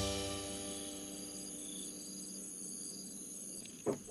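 Insects chirping in steady, high-pitched trills, some pulsing on and off. The last notes of background music fade away over the first couple of seconds.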